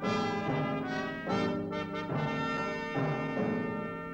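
Orchestral music: brass playing a series of sustained chords, a new chord entering every second or so.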